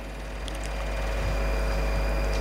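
A low, steady rumble with faint steady hum tones above it, slowly growing louder; no speech.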